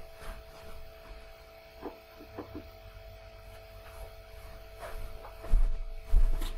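Steady electrical hum with two faint steady tones, broken by a few soft knocks about two seconds in and a louder low thump near the end.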